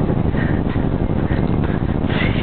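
Loud wind rumble on the microphone of a camera worn by the rider of a cantering horse, with soft, regularly repeated sounds from the horse's stride.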